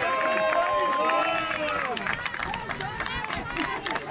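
Several players' voices shouting and calling out at once, overlapping, with no clear words.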